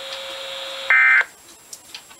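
NOAA weather radio receiver hissing with a faint steady hum after the voice message, then about a second in a loud, short warble of SAME digital data tones that cuts off suddenly: the end-of-message code closing the broadcast alert. The radio then drops to a low background.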